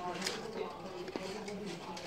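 A voice talking quietly in the background, with a couple of short soft clicks.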